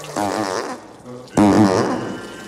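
Two fart sound effects from a comedy film, each a wavering pitched blast. The first comes just after the start and the second, louder and longer, comes about a second and a half in.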